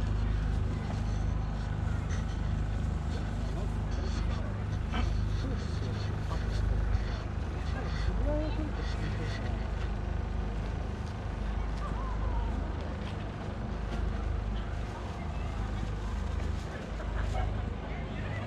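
Outdoor crowd ambience: faint voices of people walking and chatting now and then, over a steady low rumble.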